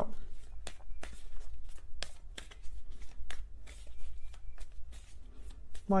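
A deck of tarot cards being shuffled by hand: a run of irregular light card clicks and flicks over a low steady hum.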